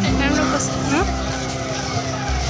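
Music with long held notes over street noise, with a voice in it, and a motor vehicle engine rising in pitch about half a second in.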